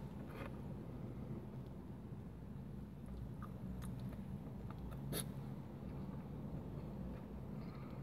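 Quiet chewing and biting of a soft, saucy burger, with a few faint clicks, the sharpest about five seconds in.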